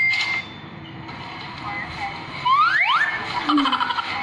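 Voices from a vlog playing through a phone's speaker, with two quick rising squeal-like whistles about two and a half seconds in.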